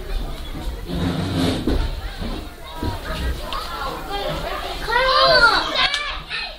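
Indistinct background voices and chatter, with a loud high-pitched voice calling out about five seconds in.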